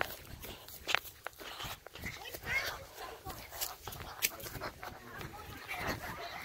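Handling noise from a phone being carried and moved against clothing: scattered clicks, knocks and rubbing, with faint voices in the background.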